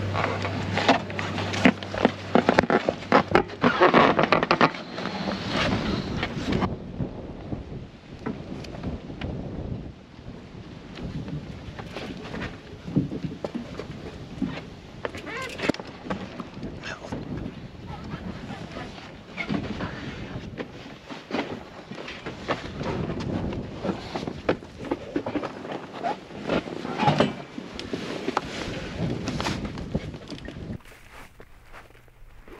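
Irregular knocks, clatter and rustling of packrafting gear being handled on a wooden jetty as a bike is lifted off an inflatable packraft, loudest in the first few seconds.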